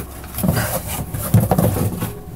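Cardboard box and paper wrapping being handled and rustled, with a man's voice making low, wordless sounds twice.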